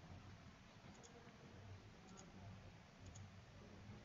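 Near silence, broken by a few faint computer mouse clicks as sketch corners are selected.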